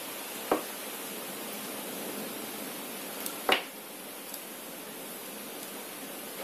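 Steady hiss of a heavy downpour outside the window, with two brief knocks from handling on the table, the louder about three and a half seconds in.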